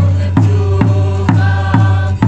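A large drum beaten at a steady beat of about two strokes a second, with voices chanting along, accompanying a Naga traditional dance.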